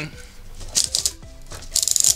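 Plastic ratchets of a hand-turned 3D-printed ratcheting CVT clicking: a few clicks a little under a second in, then a quick rattle of clicks near the end.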